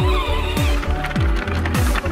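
Background music with a steady bass-drum beat. A wavering high melody line fades out in the first half.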